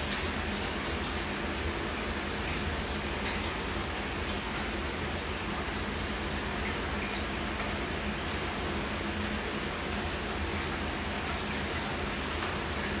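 Steady background hiss with a low hum, with faint small ticks scattered through it.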